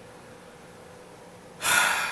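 Low room hum, then near the end a man's loud, sharp intake of breath close to the microphone.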